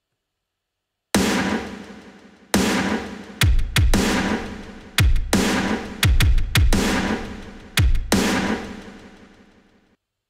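Programmed drum samples played back from Studio One's Impact drum sampler: a slow pattern of big hits with long ringing decays, several with a deep kick-drum thump under them. It starts about a second in and dies away near the end.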